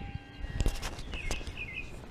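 Birds chirping faintly in the background, with a few light footsteps or clicks on concrete.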